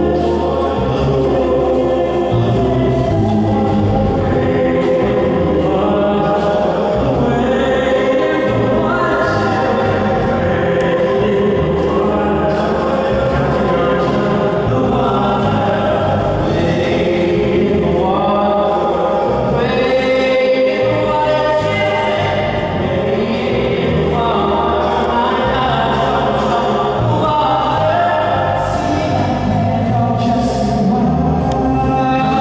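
Live amplified vocal group singing a song together, choir-style harmonies over musical accompaniment through microphones and a PA.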